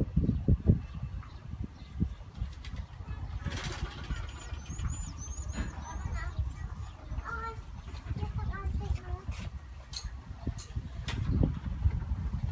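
Large knife chopping raw beef on a round wooden chopping board: dull thuds, coming in quick clusters near the start and again near the end. Faint bird chirps are heard about four to five seconds in.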